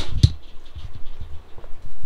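Rummaging in floor debris: irregular scratching and low thumps, with a couple of sharp clicks near the start, as debris is stirred close to the microphone.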